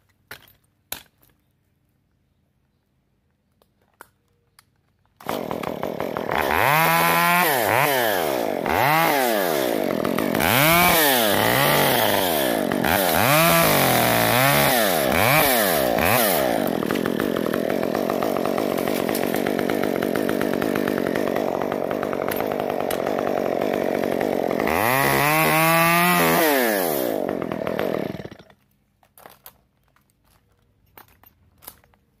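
Small top-handle chainsaw: it comes in about five seconds in, revs up and down several times, then runs steadily at full throttle while cutting off a small side stem. Near the end it revs once more and then stops. Before it comes in there are only a few faint clicks.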